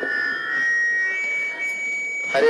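A click as the PA sound system cuts in, then a steady high-pitched whine of microphone feedback ringing through the loudspeakers.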